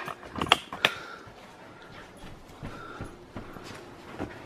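A dropped smartphone knocking twice on hard surfaces in quick succession under a second in, followed by soft scuffing and handling noise as it lies and is picked up.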